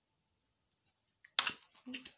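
Tarot cards being handled: more than a second of near silence, then a short, sharp rustle of card stock past the middle, with a smaller rustle just before the end.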